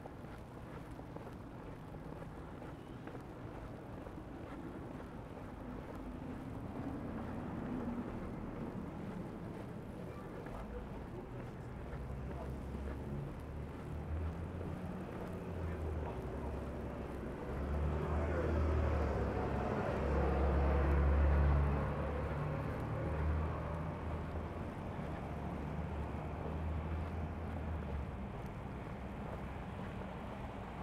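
Traffic on a snow-covered city street: a steady low rumble of vehicles, swelling as one passes more loudly about two-thirds of the way through.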